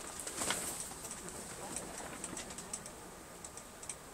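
Morse key being worked by hand to send CW, its contacts making quick, irregular clicks, with a louder rustle about half a second in.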